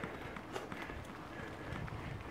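Irregular crunching and knocking of travel over a dirt trail, over a steady low rumble.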